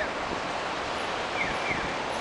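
Steady hiss of city street traffic, cars driving past on the road, with a faint short high chirp a little past the middle.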